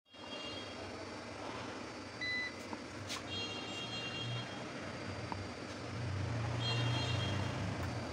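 Steady background noise with a low hum that grows louder near the end, a short high beep about two seconds in, and faint high steady tones that come and go.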